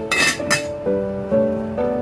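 An enamelled pot lid being set on the pot, clinking twice in the first half second, over background instrumental music.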